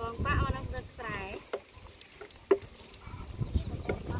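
A person's voice speaking briefly during the first second and a half, then two sharp clicks about a second apart, followed by a quieter stretch.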